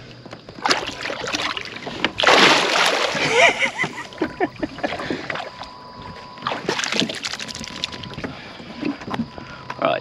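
Water splashing as a barramundi is released by hand over the side of a boat, the loudest splash about two seconds in.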